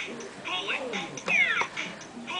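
Bop It handheld electronic game in play: its recorded voice calls and electronic sound effects come in quick succession, about one a second, each with a short falling tone.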